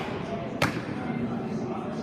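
A pitched baseball smacking into a catcher's mitt: one sharp pop about half a second in.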